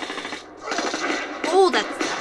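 Action-movie battle sound: rapid gunfire in two bursts with a brief gap, then a short rising-and-falling cry about a second and a half in.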